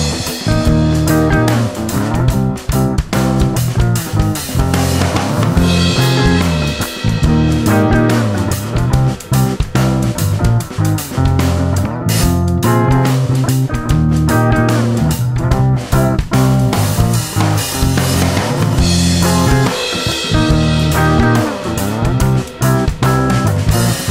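Instrumental break in an acoustic rock song: guitar over bass and drum kit, with a steady beat and no singing.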